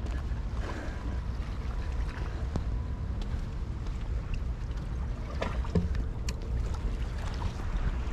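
Steady low wind rumble on the microphone, with a few faint clicks from handling the fishing line and swivel.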